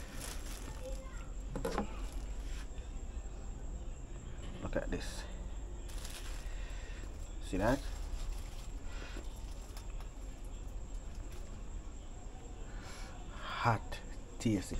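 Kitchen knife cutting through a roasted breadfruit and tapping and scraping on a plastic cutting board, as the soft flesh is split and broken apart. The handling is faint, over a steady low hum, with a few brief voice sounds in between.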